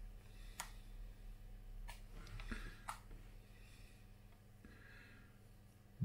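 Faint crackling with a few sharp clicks as the hot tip of a new soldering iron is dipped in a jar of rosin flux while it is being tinned for the first time.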